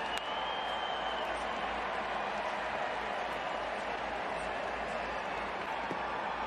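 Steady murmur of a baseball stadium crowd, with one sharp click just after the start as the pitch reaches the plate.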